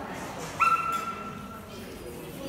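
A dog giving a single short, high-pitched whine about half a second in: it starts sharply, holds one steady pitch, then fades.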